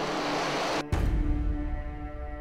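A loud, even hiss of a FIT-5 aerosol fire-suppression grenade discharging its powder mist, cutting off suddenly about a second in. A low boom follows, under held notes of background music.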